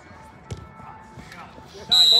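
A football kicked once on artificial turf, a single dull thud about half a second in, the shot that leads to a goal; a shrill whistle starts right at the end.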